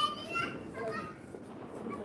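Children's voices, high-pitched chatter and calls of kids at play.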